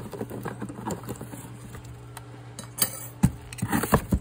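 Cardboard box and loose kit parts (rubber fuel hose, cables) rustling and knocking as they are lifted out and the box flap is moved, with a few sharper knocks near the end over a steady low hum.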